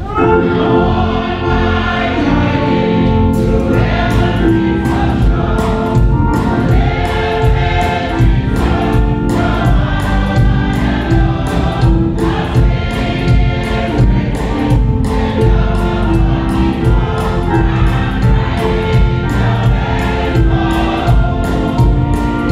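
Mixed church choir singing a gospel song with instrumental accompaniment. A regular beat comes in about three seconds in.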